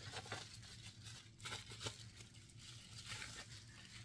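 Faint rustling and crinkling of product packaging being handled, in a few scattered short bursts over a low steady hum.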